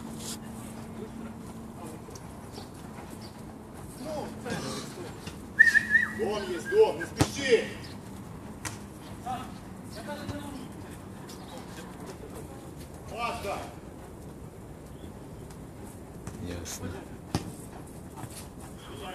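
Players shouting across an outdoor football pitch, with a few sharp thuds of the ball being kicked, the loudest about five and a half seconds in.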